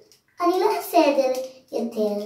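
A child's voice speaking in a drawn-out, sing-song way, starting about half a second in.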